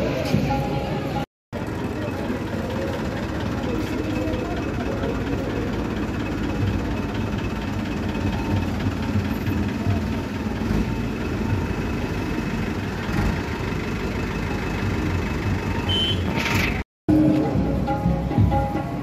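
Vehicle engines running on a crowded street, with many voices mixed in as a steady din. The sound drops out to silence for a moment twice.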